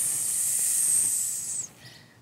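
A woman hissing like a snake through bared teeth: one long, high "sss" that tails off about one and a half seconds in.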